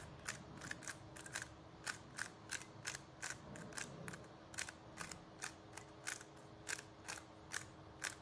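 A 3x3 Rubik's cube being turned by hand, its left face twisted over and over: a string of sharp plastic clicks, about three a second.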